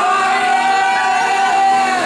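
Karaoke singing in a bar: a voice holds one long note over the backing track, with the crowd around it.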